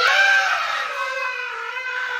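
A young girl wailing in a high, drawn-out cry without words, loudest at the start.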